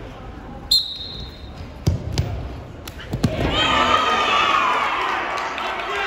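A referee's whistle gives one short blast about a second in, restarting the wrestling from the referee's position. Then come several thuds of the wrestlers hitting the mat, and from about halfway spectators shout and cheer.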